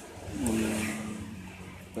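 1976 Honda Benly S110's small single-cylinder four-stroke engine running, with a louder steady tone coming in about half a second in and fading toward the end.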